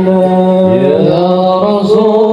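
Male voices chanting an Arabic mawlid recitation in praise of the Prophet into microphones. One voice holds a long steady note, and a second voice slides upward to join it a little after half a second in.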